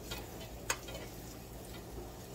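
A single sharp click of a kitchen utensil against cookware about two-thirds of a second in, over a low steady hum.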